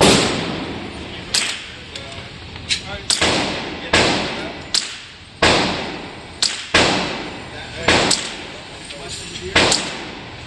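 Repeated gunshots from a Marlin 60 .22 semi-automatic rifle fired in an indoor range, about a dozen irregularly spaced shots of varying loudness. Each crack is followed by a short reverberant tail.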